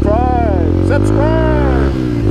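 Motorcycle engine running steadily while riding, with a person's voice rising and falling over it.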